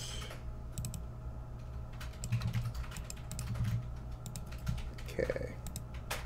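Irregular clicks and taps from a computer keyboard and mouse, over a faint steady hum.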